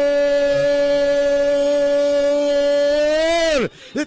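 A football radio commentator's long held goal cry, 'goooool', sung out on one unbroken high note. Near the end it lifts slightly, then falls away and breaks off.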